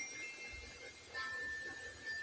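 Soft background music of sustained, chime-like ringing tones, with a new high note struck about a second in and held.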